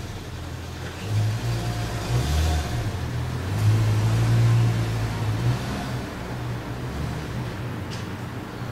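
A low rumbling hum that swells to its loudest around the middle and then eases off.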